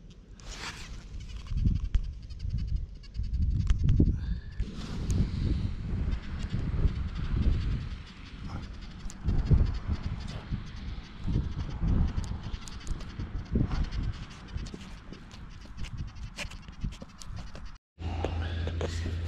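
Wind buffeting the microphone in irregular gusts of low rumble, with scattered light clicks and rustles.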